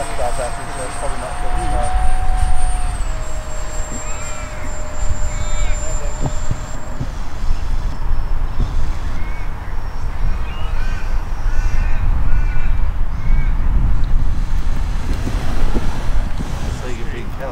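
The 50 mm electric ducted fan of a 3D-printed F4D Skyray RC jet whines steadily, steps down slightly in pitch about three seconds in and stops around seven seconds as it is throttled back to come in to land. A steady low rumble runs underneath, and birds chirp and caw in the second half.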